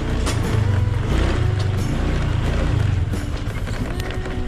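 Small motor scooter running at low speed over a bumpy dirt path, a steady low engine sound with a fast flutter, with music playing underneath.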